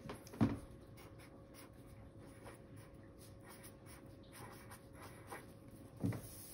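Felt-tip marker writing on paper: faint, irregular scratchy strokes, with a soft thump about half a second in.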